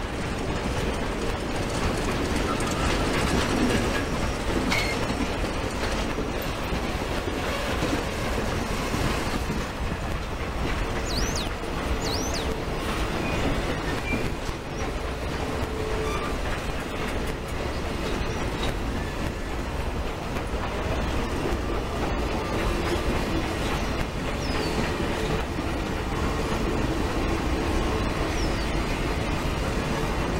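Passenger cars of a steam excursion train rolling past: the steady rumble and clatter of steel wheels on the rails, with a few brief high squeals around the middle.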